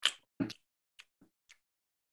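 A handful of short, sharp mouth clicks and lip smacks, spaced irregularly: a person miming biting into and chewing an apple.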